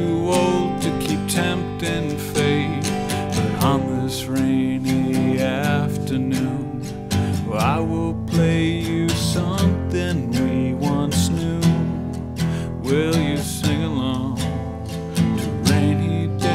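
Strummed acoustic guitar carrying an instrumental passage of a live song, with some notes bending in pitch over the chords.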